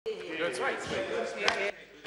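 Several men's voices talking over one another in a large chamber, with one sharp knock about one and a half seconds in; the sound drops away suddenly just after.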